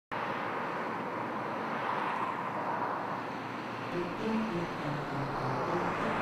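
Steady outdoor street ambience: an even wash of traffic noise from the road, with faint short pitched sounds joining about four seconds in.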